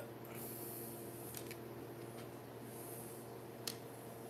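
Soft plastic fishing lures being set down and handled on a tabletop: a few faint light taps, the sharpest near the end, over a steady low room hum.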